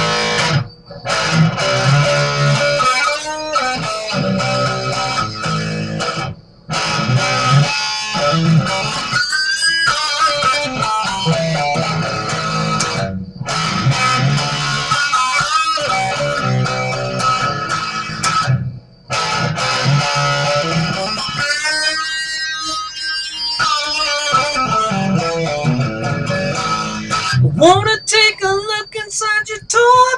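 Electric guitar playing the song's intro, a riff that repeats every six seconds or so with a short break between passes. A brief laugh comes early on, and a voice starts singing near the end.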